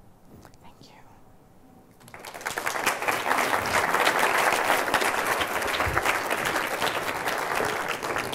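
Audience applause, many people clapping, starting about two seconds in and holding steady.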